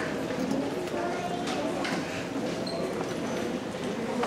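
Indistinct murmur of voices in an auditorium, with scattered footsteps and light knocks on a stage floor.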